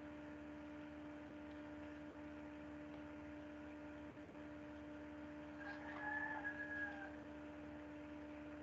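Steady electrical hum on the recording, with a faint pitched sound lasting about a second near six seconds in.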